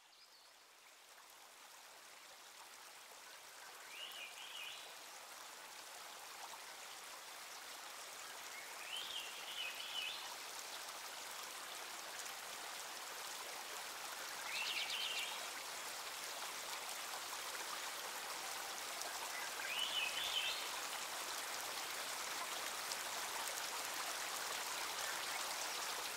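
Shallow woodland stream running over gravel, a steady watery hiss that fades in gradually. A bird calls a short chirping phrase four or five times, about every five seconds.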